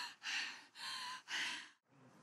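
Three short breathy gasps in quick succession, each about half a second, from a cartoon character's voice.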